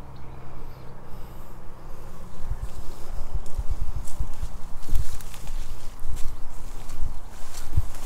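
Footsteps through tall grass and brush, with irregular low thumps from about two and a half seconds in and light rustling of the vegetation.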